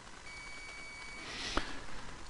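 Faint background hiss in a pause between speech, with a short breath drawn in and a single sharp mouse click about one and a half seconds in.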